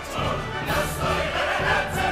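Choir singing over an orchestra in a dramatic stage-musical number.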